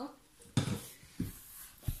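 Three short, dull knocks about two-thirds of a second apart, the first the loudest, from a metal spoon and a plastic bowl as stirring of a bowl of thick, foamy slime begins.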